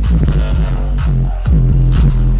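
Loud electronic dance music from a live DJ set played over a festival sound system, with a deep bass line and regular drum hits.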